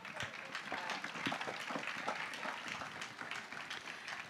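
Audience applauding, fairly quiet: many overlapping hand claps.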